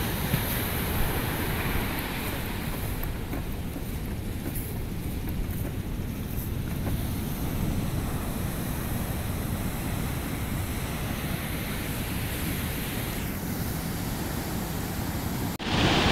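Ocean surf breaking on the beach, a steady rushing wash of waves, with wind buffeting the microphone.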